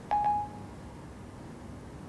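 A short electronic chime from an iPhone 4S's Siri: one clear tone that rings for about half a second just after the start. It is the cue that Siri has stopped listening to a spoken question and is working on the answer. Faint room tone follows.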